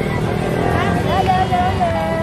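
Street traffic, with a motorcycle engine running close by, and a high voice drawn out over it in the second half.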